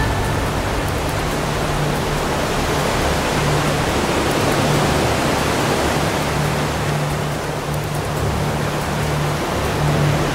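Steady, loud rushing roar of heavy breaking surf, with music's low notes underneath.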